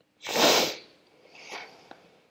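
A person sneezing once, short and loud, followed about a second later by a much quieter breathy sound.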